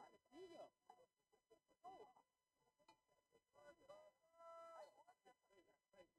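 Near silence, broken by a few faint, distant voices calling out. One call is held for about half a second towards the end.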